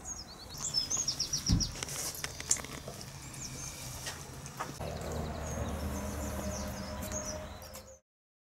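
Small birds chirping, with a quick trill of rapid notes about a second in. There is a dull thump about one and a half seconds in, and a low steady hum joins from about five seconds in; all of it fades out at the end.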